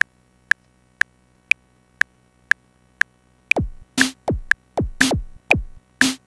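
1010music Blackbox sampler's sequencer metronome clicking two beats a second, every fourth click higher, and about three and a half seconds in a sampled drum pattern starts over the clicks: deep kicks that drop in pitch and snare-like hits.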